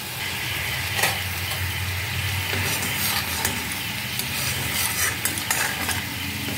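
Liquid bubbling and sizzling in an aluminium wok over a gas flame, a steady hiss with a low hum beneath it. A few brief clicks and scrapes of a metal spatula against the pan come about a second in, around three seconds in, and again near the end.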